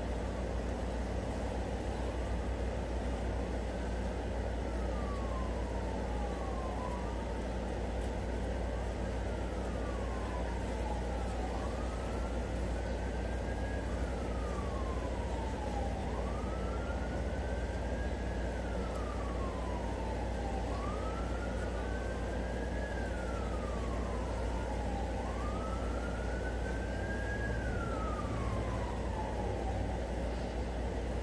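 A distant emergency-vehicle siren wailing, its pitch rising and falling slowly about every four to five seconds and growing gradually louder. A steady low rumble runs beneath it.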